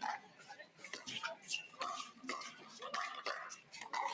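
Pickleball paddles striking the plastic ball in a quick exchange at the net: a rapid, irregular run of sharp pops, more than a dozen in four seconds.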